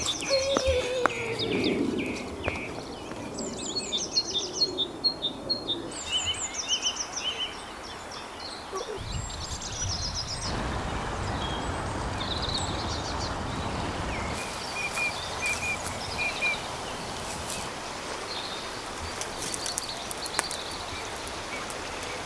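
Small birds chirping and singing in short, repeated high trills, on and off throughout, over a steady outdoor background hiss.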